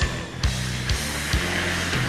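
Rock song with a drum kit played along to it: sharp drum hits about twice a second over sustained bass and guitar notes.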